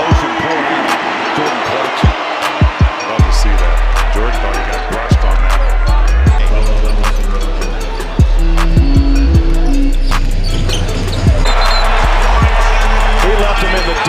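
A basketball dribbled on a hardwood court, sharp bounces over arena crowd noise. Background music with a heavy bass comes in about three seconds in.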